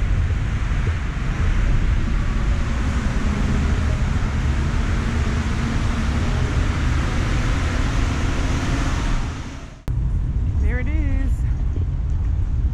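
Paris Métro train noise in a tiled underground station: a loud, steady rumble and hiss with a low hum that fades near the end of the station shot. After a sudden cut, outdoor street traffic noise with short wavering chirps.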